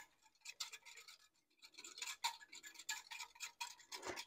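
Faint, irregular clicking and scraping of a utensil mixing a sour cream, flour and water mixture in a container.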